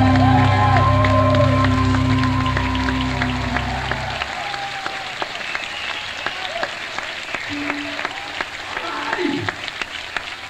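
A rock band's final chord ringing out and cutting off about four seconds in, with the small theatre audience applauding and cheering throughout, heard on an audience tape recording.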